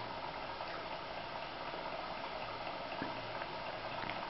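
Small model hot air engine of Jerry Howell's 'Vicky' design running at a steady speed: a fast, fine, even mechanical patter from its pistons and crossheads.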